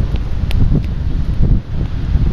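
Wind buffeting the camera microphone: an uneven low rumble, with a few faint clicks.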